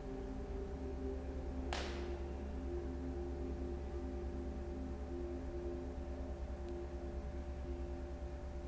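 Soft ambient background music: a sustained drone of several held tones that waver and pulse slowly, like a singing bowl, over a low steady hum. A short breathy hiss about two seconds in.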